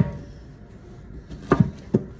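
A kitchen knife chopping through peeled pineapple and knocking on a wooden cutting board: one knock at the start, two quick knocks about one and a half seconds in, and another near the end.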